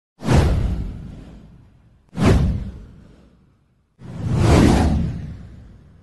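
Three whoosh sound effects for an animated title intro, each a sudden rush that fades away over a second or two; the third swells in more slowly than the first two.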